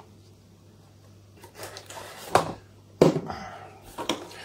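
A few sharp knocks and clatters of things being handled and set down on a hard worktop, starting about a second and a half in, the loudest fitting a bottle of malt vinegar being put down. A faint steady hum lies underneath.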